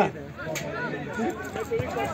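Faint, overlapping voices of players and onlookers calling out across an outdoor football pitch, with one short knock about half a second in.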